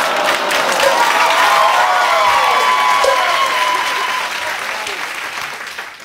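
Studio audience applauding, with a few voices cheering over it, fading away near the end.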